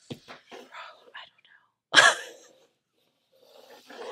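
A person murmuring softly under their breath, then one loud, short breathy outburst from the voice about two seconds in, with faint breathing near the end.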